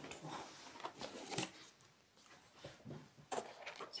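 Handling noise from a cardboard organiser box of embroidery floss being picked up and moved: rustling with a few sharp taps, the loudest about a second and a half in.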